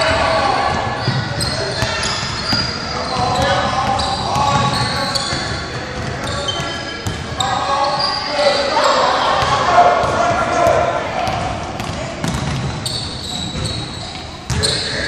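Echoing gym sound of a basketball game in play: indistinct shouts and calls from players and the sideline, a ball bouncing on the hardwood floor, and sneakers squeaking on the court.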